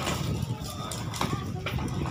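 Hard plastic wheels of a toddler's ride-on toy car rolling over a concrete street: a low, continuous rattling rumble with a few sharp clacks.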